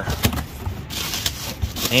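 Bubble wrap and cardboard crinkling and rustling as gloved hands pull a wrapped steamer out of a box: a run of small crackles, busier in the second half.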